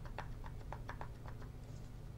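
Small metal cylinder of a dosimeter charger (its piezoelectric generator) being worked out of its plastic housing by hand: a quick run of faint clicks and scrapes, about six a second, that stops about a second and a half in.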